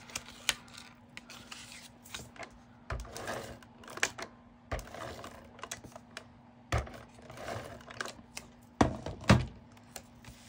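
Cardstock panels handled on a desk while double-sided tape is laid with a tape runner: scattered light clicks and taps with brief scraping rustles, and two sharper knocks near the end.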